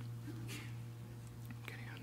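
Quiet room tone with a steady low hum, and a faint murmured word near the end.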